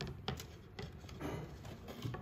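Quiet handling of the wooden parts of an early-19th-century portable copying machine: a few light clicks and taps in the first second, then softer handling noise.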